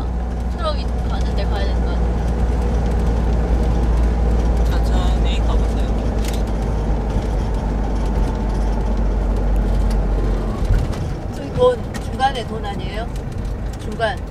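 Steady low drone of a bus's engine and road noise, heard from inside the cab while cruising on the motorway. The drone falls away about ten seconds in as the bus slows, with faint voices in the cabin.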